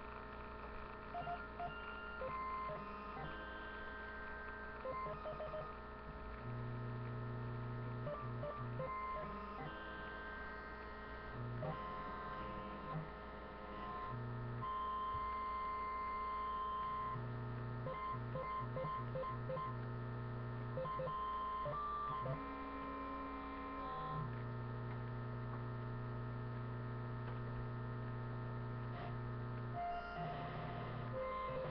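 A steady electrical hum, with short beep-like tones at several different pitches switching on and off, and a low buzz that comes and goes in stretches of a few seconds.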